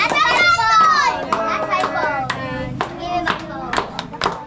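A group of children talking and shouting excitedly over one another, with a few sharp claps in the second half.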